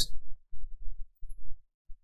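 Several short, low thumps, irregularly spaced, with no voice between them.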